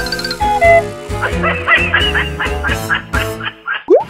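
Comedy sound effects over background music with a steady low beat: a few short stepping tones, then a rapid run of short animal-like calls, about five a second, and a quick rising glide just before the end.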